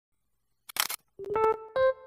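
A camera shutter click sound effect just under a second in, then a few short electric piano notes as the intro music begins.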